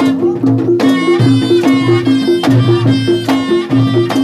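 Reog Ponorogo gamelan music. Two pitched gong-chime notes alternate in a steady repeating pattern, with drum strokes and a held reedy melody over them.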